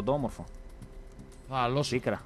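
Light clicks of typing on a computer keyboard, heard in a gap between short spoken sounds: a voice at the very start and again near the end.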